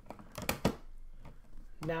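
Plastic tiles of a homemade Rubik's Magic-style folding puzzle tapping and clicking against each other and the tabletop as the folded stack is turned by hand, with two sharper clacks about half a second in.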